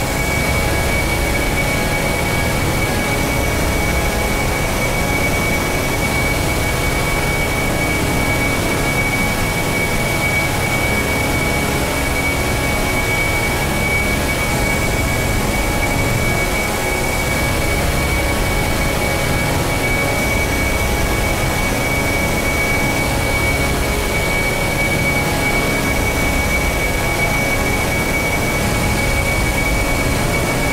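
A steady, unchanging drone of dense rumbling noise with a constant high whistle on top, with no beat or melody. It sounds much like a jet engine running.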